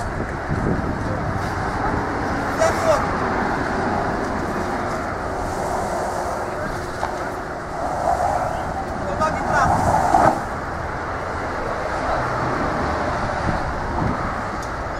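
Steady road traffic noise, with a few short knocks and scrapes.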